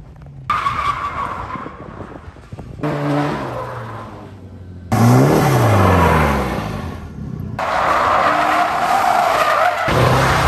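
Drift cars' engines revving up and down while their tyres squeal through slides, in several short shots cut together so the sound changes abruptly a few times. The loudest stretch is about halfway, where the engine note climbs and falls quickly.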